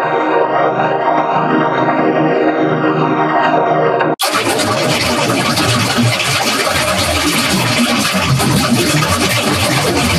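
Electronically distorted logo jingle music: a sustained synth chord with a flanging sweep running through it, which cuts off abruptly about four seconds in and gives way to a harsh, dense, noisy distorted version of the music.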